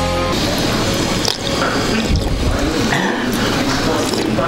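Rock music that cuts off abruptly within the first half-second, followed by water from a stainless drinking fountain running and splashing into its basin.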